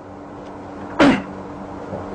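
A single short, sharp mouth or throat noise from a man pausing in his talk, about a second in, over a steady low hum.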